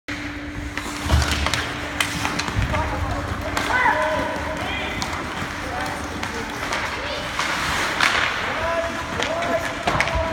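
Ice hockey in an indoor rink: skate blades scraping on the ice and several sharp clacks of sticks on the puck and ice, with spectators and players calling out in the background.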